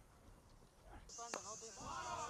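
A single faint crack of a cricket bat striking the ball, about a second and a half in, as the ball is lofted for six. Faint distant voices follow.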